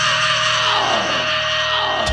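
Heavy metal band playing live: a held vocal scream slides down in pitch over ringing distorted guitars and cymbal wash.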